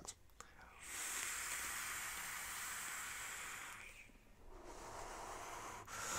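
A long drag on a vape mod: a breathy hiss of air drawn through the atomizer for about three seconds. After a brief pause it is followed by a softer exhale of vapour.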